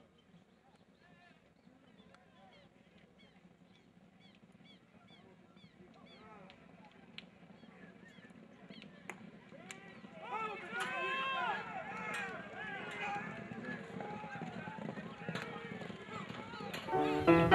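Race crowd at a horse race, many voices shouting and cheering the galloping horses, faint at first and building steadily, loudest from about ten seconds in.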